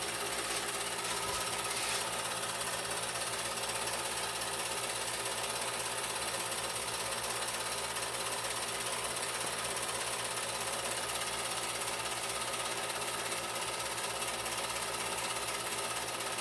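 Film projector running steadily, the continuous mechanical whirr and chatter of its film-advance mechanism.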